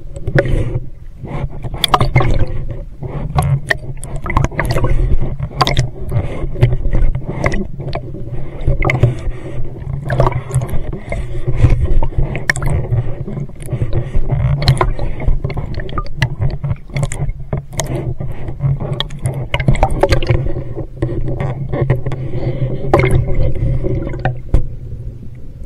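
Underwater noise picked up by a handheld camera: the scuba diver's exhaled bubbles rumble and gurgle in irregular surges, with frequent sharp clicks and knocks as the camera and dive gear knock together.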